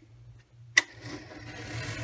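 A sharp click about three-quarters of a second in as the cutting head of a sliding-rail paper trimmer is pressed down. It is followed by a steady scraping hiss as the blade runs along the rail, cutting through the cardstock.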